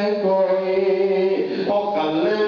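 A man's voice chanting melodically into a microphone, holding long notes, with a short break and a change of note about a second and a half in.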